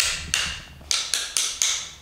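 Small hammer tapping the shoulder of a Japanese hand plane's (kanna's) blade, driving the blade into the wooden plane body: about six sharp metal taps, the later ones coming quicker.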